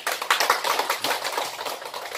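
Applause from a small seated audience: many hands clapping quickly and unevenly.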